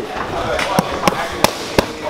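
Boxing gloves striking focus mitts: four sharp smacks in quick succession, about three a second, starting a little before halfway.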